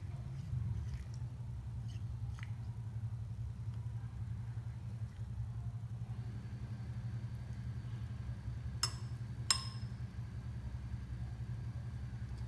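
Metal spoon stirring flowers in water in a glass, with soft taps early on and two sharp clinks of the spoon against the glass, half a second or so apart, about nine seconds in. A steady low hum runs underneath.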